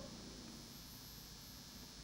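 Near silence: faint steady room tone and hiss in a small classroom.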